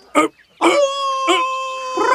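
A wolf's howl: a short yelp, then one long howl held on a steady note, sinking slightly as it carries on.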